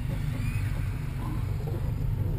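Steady low rumble of engine and road noise heard from inside the cabin of a moving car.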